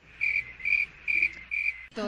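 Four short, high-pitched chirps in an even rhythm, about two a second, in a gap between the talk.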